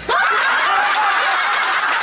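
A room full of people suddenly bursts into loud laughter, many voices overlapping.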